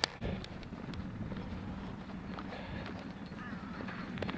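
A distant tractor engine running steadily as a low drone, with footsteps on a gravel path over it.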